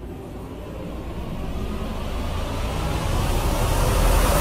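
Car driving: a low rumble of engine and road with a rushing noise above it, building steadily louder.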